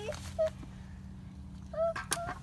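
A young child's two brief high-pitched vocal sounds, one about half a second in and one near the end, over a steady low hum.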